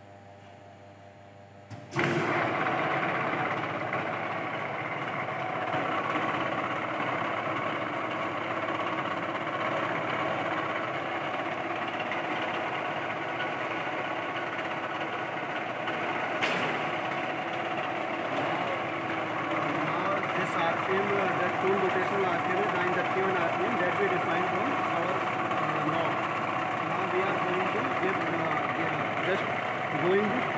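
Friction stir welding machine switched on about two seconds in: its motor and spindle start suddenly and then run steadily, the tool turning at 931 rpm before it is plunged into the plate.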